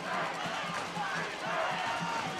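Football stadium crowd: many voices in the stands mixing together, with music carrying a quick, even low beat about four times a second underneath.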